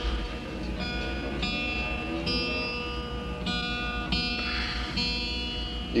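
Guitar being picked unaccompanied: single notes and chords struck every half second to a second and left to ring, over a steady low hum.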